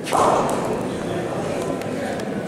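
A sudden sharp knock just after the start, then a few lighter clicks: bocce balls striking on an indoor carpet court, with voices in the hall.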